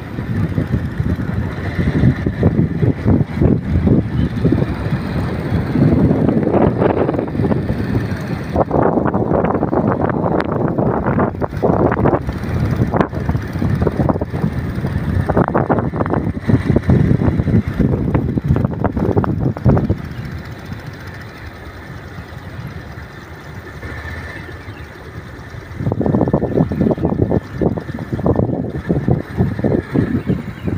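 Wind buffeting the microphone while riding at speed, with motorcycle engine noise underneath. The rush eases for several seconds about two-thirds of the way in, then comes back.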